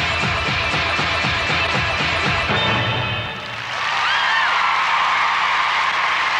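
Upbeat dance-pop music with a steady beat ends about halfway through, and an arena crowd breaks into cheering and applause, with a few whistles.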